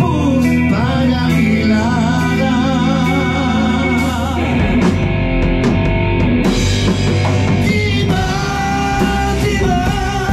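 A rock band playing live in a rehearsal room: drum kit, electric guitars and bass guitar under several voices singing the song together, the sung lines wavering with vibrato in the first half.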